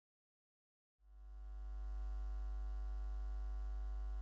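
Electrical mains hum at about 50 Hz with a buzzy ladder of overtones. It fades in from dead silence about a second in and then holds low and steady.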